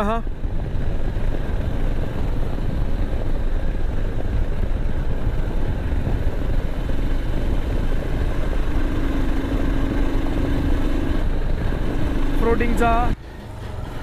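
Motorcycle riding along at road speed: steady wind rush on the handlebar-mounted microphone over the engine's running, with a steadier engine note for a couple of seconds in the middle. The sound drops off suddenly shortly before the end.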